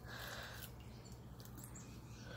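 Quiet room tone: a steady low hum with a few faint ticks.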